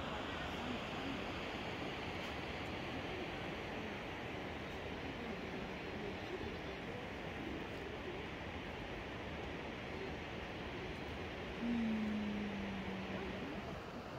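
Steady rushing noise of a nearby waterfall, with faint distant voices. Near the end a brief low hum, falling slightly in pitch, rises above it.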